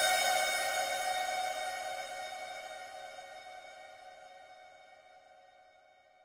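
A held software-synthesizer chord with no beat under it, fading out steadily to near silence: the final chord of a progressive house track ringing out.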